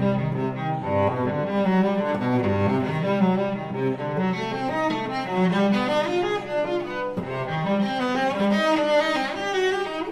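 Solo cello playing a fast study of slurred arpeggiated runs. A low note sounds beneath the quickly moving upper notes for most of the passage.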